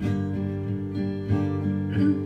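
Steel-string acoustic guitar strummed in a steady rhythm, its chords ringing.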